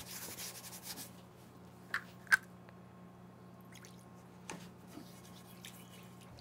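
Faint rubbing of a paper towel and kosher salt inside a cast iron skillet in the first second, then two light, sharp clicks about two seconds in, over a steady low hum.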